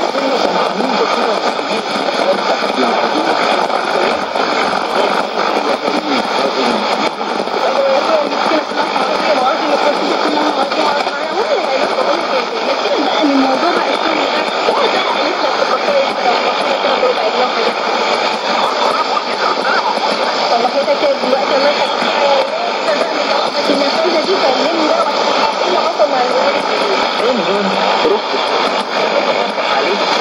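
Arabic-language speech from a shortwave AM broadcast on 11945 kHz, heard through the loudspeaker of a Sony ICF-2001D receiver. The voice is thin and bandwidth-limited, over steady hiss with faint interference tones.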